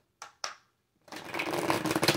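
A deck of tarot cards being shuffled by hand: two short rustles, then about a second in a fast riffle of the two halves, a rapid run of card clicks lasting about a second and a half.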